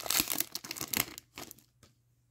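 Shiny plastic wrapper of an Upper Deck Extended Series hockey card pack crinkling as it is pulled open and handled. The crackling thins out and stops about a second and a half in.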